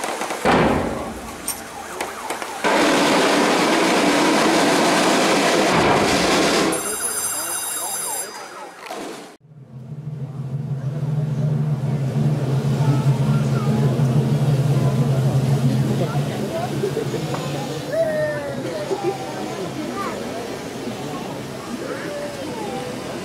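A sharp bang about half a second in, typical of a procession firecracker, followed by several seconds of loud, even noise. After an abrupt break about nine seconds in, a crowd talks over a steady low hum.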